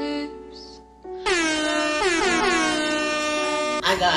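A sung line of a slow song fades out. About a second in, a loud air-horn sound effect blasts over the music several times, each blast swooping down in pitch before it holds.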